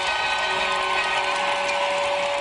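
Sound effect under a TV show's logo sting: a steady, even rush of noise with a held tone running through it.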